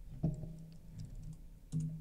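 Computer keyboard typing: a few soft, scattered key clicks as text is typed onto the screen.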